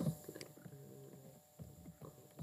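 A few faint clicks from a computer keyboard and mouse during code editing, with a low, faint murmur of a voice between them.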